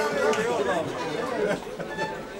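Indistinct chatter of several voices talking at once.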